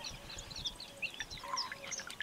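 Many small birds chirping in quick, scattered calls, with light splashing and dripping of water as handfuls of green bean pods are lifted out of a tub of water.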